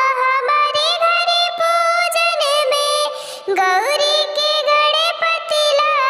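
A high, cartoon-like singing voice, sped up or pitch-raised, singing a Hindi folk devotional song to Lord Ganesha with light percussive taps in the accompaniment.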